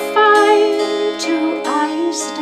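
Appalachian mountain dulcimer strummed over a steady drone note, with a woman singing a folk song above it.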